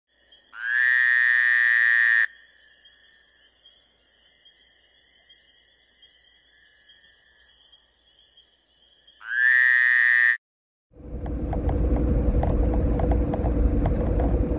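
Two loud, long pitched tones, the first about a second and a half and the second about a second, each rising slightly at its onset, with a faint steady high hum between them. From about eleven seconds in comes the steady low rumble of a car's interior.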